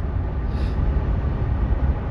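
Steady low rumble of a car cabin on the move: road and engine noise heard from inside the car.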